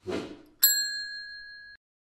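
A short whoosh, then about half a second in a single bright bell ding that rings for about a second and cuts off abruptly. It is the notification-bell sound effect of a like-and-subscribe end-screen animation.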